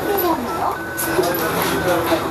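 Inside a city bus cabin: low engine and road rumble under indistinct voices, with a couple of brief high beeps early on.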